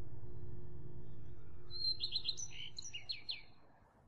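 A low, steady droning background music bed fading out, with a quick run of high, downward-sweeping bird chirps from a little under two seconds in, lasting about a second and a half.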